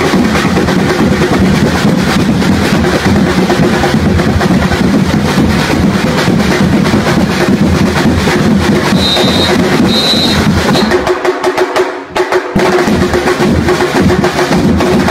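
Loud drum-driven festival dance music with a steady, busy beat of bass and snare drums. Near the end the low drums drop out for about a second before the beat comes back.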